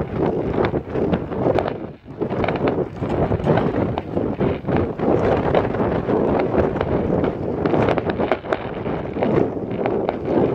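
Wind buffeting the microphone, with many small, sharp crackles and pops from fireworks scattered through it.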